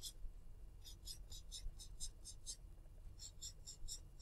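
Felt-tip marker stroking on paper, drawing a row of loops: faint quick strokes, about four a second, in two runs with a short pause between them.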